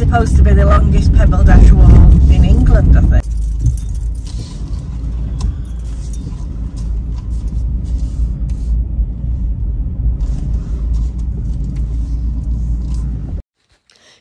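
Car being driven, heard from inside the cabin: a steady low road rumble with small scattered rattles and clicks. For about the first three seconds a louder voice sits over it, and the sound cuts off suddenly shortly before the end.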